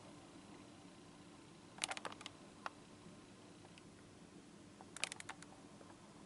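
Quiet room tone with two short clusters of faint, sharp clicks, one about two seconds in and one about five seconds in, and a single click between them.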